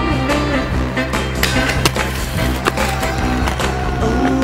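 Aggressive inline skate wheels rolling on concrete, with several sharp clacks, mixed under a music track.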